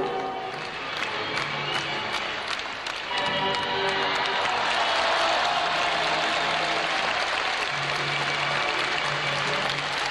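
Floor-exercise music playing, with an arena crowd breaking into sustained applause about three seconds in that carries on over the music.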